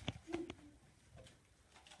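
A young child's quiet voice saying 'this porridge is too' in the first half-second, then a quiet room.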